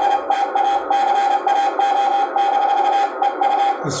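Morse code (CW) signal on a shortwave transceiver's receiver: a single steady-pitched tone keyed on and off in dots and dashes over band hiss. The low end is cut away by the radio's narrow CW filter.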